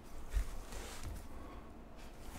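Faint rustling of a trading card being handled in gloved hands, with a soft bump about half a second in.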